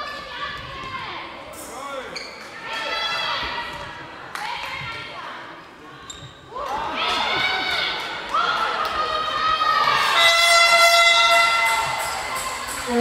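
A handball bouncing on a sports-hall floor amid high-pitched shouts from young players and spectators, echoing in the large hall. Near the end a steady, horn-like tone is held for about two seconds.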